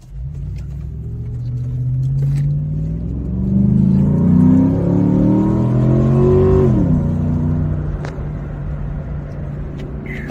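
A Jeep's 5.7 HEMI V8 revving up under acceleration in a held low gear, its pitch climbing steadily toward about 4,000 rpm and getting louder. About seven seconds in the pitch drops sharply and the engine settles to a steadier, lower run. The high revs are meant to circulate a freshly added oil treatment, since these HEMIs don't oil well at idle.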